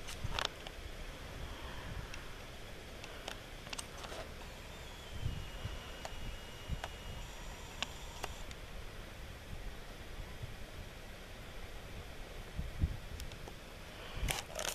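Quiet open-air ambience with a steady low background hiss, a few faint clicks and soft low thumps of the camera being handled. In the middle a faint high whine steps down in pitch and holds for a couple of seconds while the camera zooms in.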